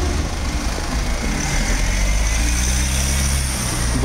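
A motor vehicle's engine running close by, a steady low rumble that grows louder from about a second and a half in and eases off near the end, as if a car is moving past.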